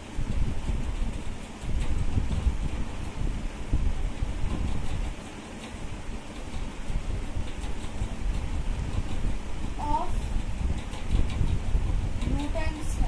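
Steady low rumbling noise, rising and falling in strength, with a brief voice sound about ten seconds in.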